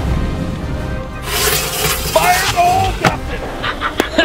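Firework going off over background music: a hissing crackle, a short whistling tone, then one sharp bang about three seconds in.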